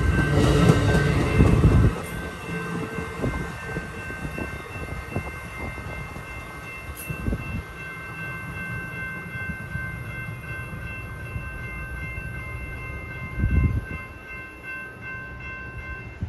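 Amtrak Pacific Surfliner train of bilevel Superliner cars pulling away: loud rumble of the last car's wheels passing for about two seconds, then a quieter rumble as the train draws off. A steady high-pitched ringing of several tones runs under it, with a brief low surge near the end.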